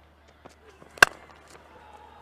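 Cricket bat striking the ball once about a second in: a single sharp crack of a cleanly timed shot, over faint steady ground noise.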